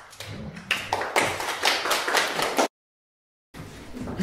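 A small audience applauding, with many quick overlapping claps, cut off abruptly about two and a half seconds in. Then a moment of dead silence and faint room sound.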